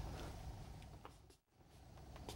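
Near silence: faint room tone with a low hum, fading and cutting out completely for a moment about one and a half seconds in, then returning faintly.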